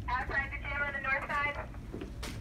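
A person's voice, speaking briefly in a fairly high pitch, its words not made out, over a steady low room hum; the voice stops about a second and a half in.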